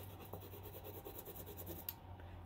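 Faint scratching of a stick of chalk rubbed across paper in short, repeated strokes, with a small tick near the end.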